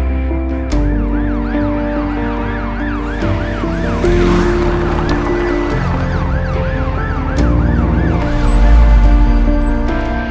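Ambulance siren wailing in quick rising-and-falling sweeps, about three a second. It starts about a second in and stops near the end, over a music score of sustained chords and bass. A deep low rumble swells loudest just after the siren stops.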